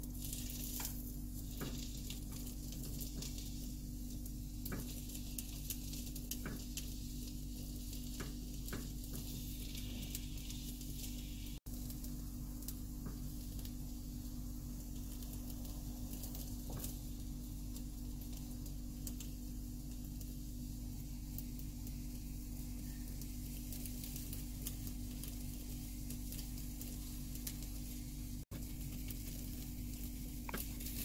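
Rolled egg omelette (gyeran mari) sizzling steadily in oil in a nonstick frying pan, with scattered light clicks as chopsticks and a wooden spatula turn the roll. The sound briefly drops out twice.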